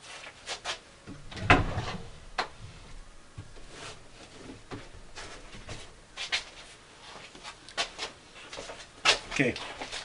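Scattered knocks and clatter of someone rummaging on wooden shelving and handling boxes, with a heavier thump about a second and a half in.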